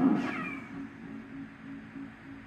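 A short yowling cry, loud at the start and falling in pitch, fading within about a second, over a faint low hum.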